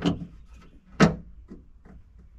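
A single sharp knock about a second in, then a couple of faint clicks: a part being fitted by hand into the inside of a Mazda 3's trunk lid.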